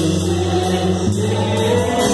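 Christian worship music from a full band: the drum kit is played with sticks under ringing cymbals, with sustained chords and choir-like singing. The chord changes about a second in and again at the end.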